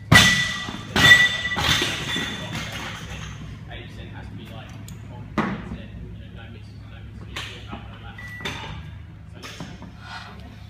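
Heavy thuds with a metallic ring as a barbell and weight plates hit the gym floor: two loud ones near the start and about a second in, then lighter clanks and knocks.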